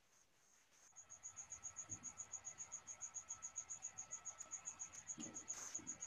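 A cricket chirping faintly in a steady, evenly pulsed high trill of about ten pulses a second, starting about a second in.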